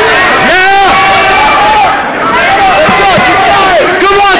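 Spectators shouting, several loud voices overlapping over a crowd hubbub.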